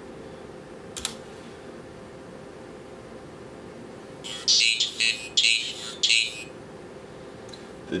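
SP0256A-AL2 phonetic speech synthesizer chip speaking 'RC 2014' through a small speaker, a synthesized voice lasting about two seconds from roughly halfway in. A steady electrical hum runs underneath, with a single click about a second in.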